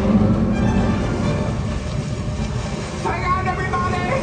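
Theatre show soundtrack played over the auditorium speakers: music with a low, steady rumble of rushing-water effects. Near the end a held melodic line comes in over it.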